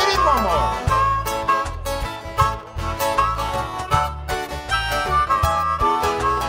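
Harmonica solo played into a microphone over strummed acoustic guitars, in a reggae rhythm, with a long falling slide in pitch near the start.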